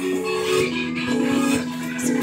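Background music: a hip-hop beat with long held low notes and faint ticks, playing without vocals.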